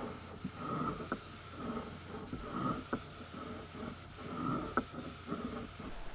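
Faint, irregular rustling and handling noises with three sharp clicks about two seconds apart; no spray-gun hiss.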